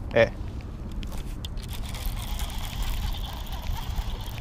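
Low steady rumble of handling noise on a body-worn action camera's microphone while a baitcasting rod and reel are handled, with a few faint clicks about a second and a half in.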